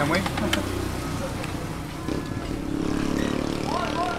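A motor vehicle's engine passing on the road close by, a low drone that swells to its loudest about three seconds in.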